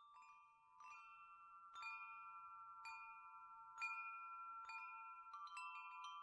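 Faint chime tones, struck about once a second and each left ringing, with a quicker run of strikes near the end.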